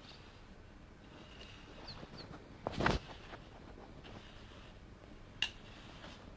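A few faint, short bird calls over quiet outdoor background, with a brief louder noise just before the middle and a sharp click near the end.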